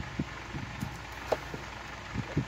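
Room fan running steadily, with a few light clicks and taps as a plastic video case is handled and slid back onto a shelf, the sharpest click about a second and a half in.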